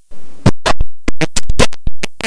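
A rapid series of loud, sharp taps, about four or five a second, each dying away quickly; they pause briefly and start again about half a second in.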